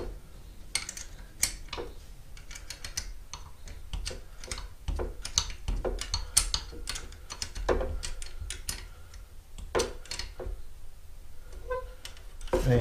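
Irregular light clicks and ticks, some in quick little runs, as a fitting on the joint between the front and back halves of a folding mobility scooter frame is tightened by hand.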